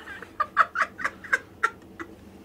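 A high, squeaky voice making about seven short staccato sounds in quick succession, a few per second, then stopping near the end.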